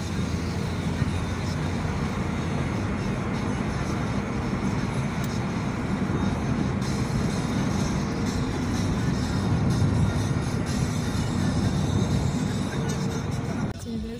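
Steady road and engine noise inside a moving car's cabin, with music playing. The noise drops off suddenly just before the end.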